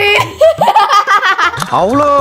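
Girls laughing together, a run of quick giggles mixed with talk.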